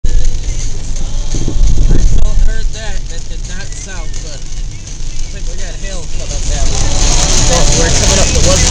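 Car cabin noise while driving in heavy rain: a steady low road rumble under a hiss of rain and tyre spray, with an indistinct voice in the middle.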